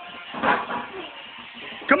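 Loud shouts of encouragement during a heavy barbell deadlift: one sharp shout about half a second in, and a shouted "come on" starting just at the end.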